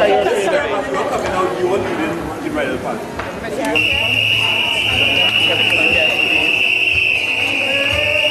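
Chatter of voices, then a loud, steady high-pitched tone starts suddenly about four seconds in and holds without a break.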